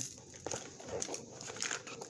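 Hands rummaging through a cosmetics bag: small plastic bottles and packaging rustling, with a few soft clicks as items knock together.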